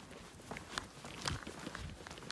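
Footsteps on an asphalt path: a few light, uneven steps of someone walking.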